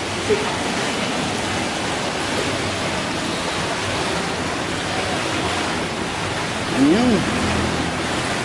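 Steady rush of water pouring from a pool's fountain spouts into a swimming pool.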